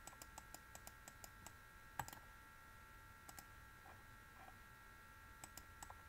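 Faint quick clicks of a stylus tapping a pen tablet while writing by hand, in short runs of several a second, with one louder click about two seconds in. A faint steady high whine sits underneath.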